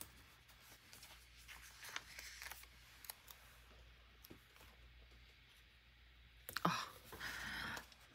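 Faint, sparse clicks and paper rustles as paper stickers are peeled from a sticker sheet and pressed onto a journal page. A short spoken 'Oh' comes near the end.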